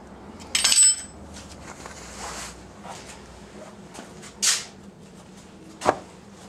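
Metal hand tools clinking as they are handled and put down: a ringing clank about half a second in, a short scrape in the middle and a sharp click near the end.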